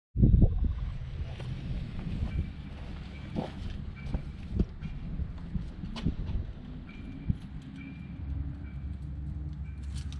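Suzuki GSX-R750's inline-four engine idling with a steady low rumble, a loud bump at the very start and a few sharp clicks and knocks on top.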